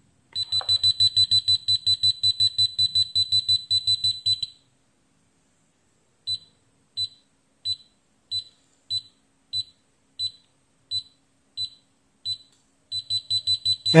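Kaiweets KM601 multimeter's non-contact voltage (NCV) beeper: a rapid string of high-pitched beeps, about six a second, for some four seconds, then a pause, then slow single beeps about one and a half a second, quickening again near the end. The beep rate tells how strongly it senses live mains voltage in the nearby wire: fast beeping when close to the live conductor, slow beeping when the signal is weak.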